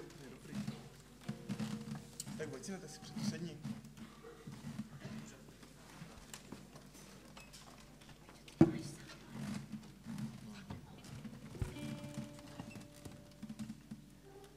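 A quiet pause on stage while a band gets ready to play: faint murmured voices, a sharp knock about eight and a half seconds in and a softer one near twelve seconds, then a few held instrument notes near the end.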